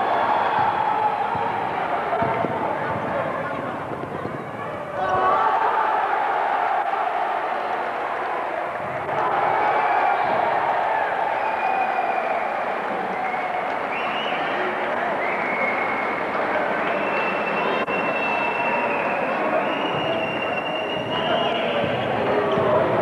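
Basketball crowd in an indoor arena: a dense, continuous din of many voices, with sudden jumps in level about five and nine seconds in and a few held high notes in the second half.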